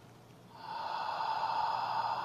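A long, audible exhale: a steady, breathy rush of air that starts about half a second in and is still going at the end.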